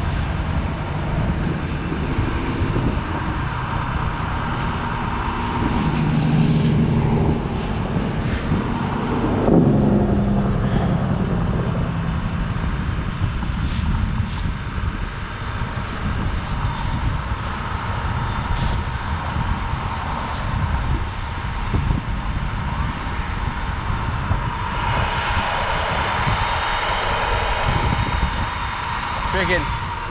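Wind rushing over the microphone over a steady vehicle-engine rumble, which swells and fades between about six and ten seconds in; a hiss grows from about twenty-five seconds on.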